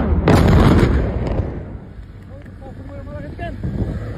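A large explosion in a wildfire: a sharp blast, then a heavy rolling rumble that dies down over about a second. People's voices follow faintly in the later part.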